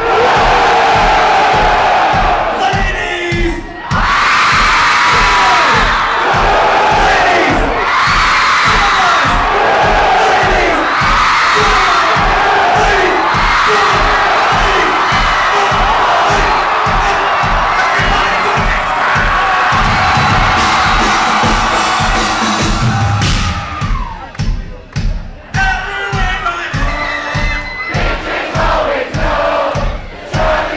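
Live rap-rock band playing over a steady kick-drum beat, with a crowd shouting and singing along loudly. The mass of voices thins and breaks up from about three-quarters of the way through.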